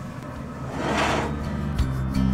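A cast iron skillet is dragged across a pellet grill's metal grates, giving a short scraping noise about a second in. Background music starts near the end.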